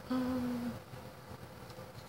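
A woman's short hummed "mm", held at one steady pitch for about half a second.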